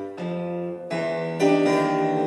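Digital stage piano playing sustained chords. A new chord is struck about a quarter second in, another near the middle, and a louder one about a second and a half in.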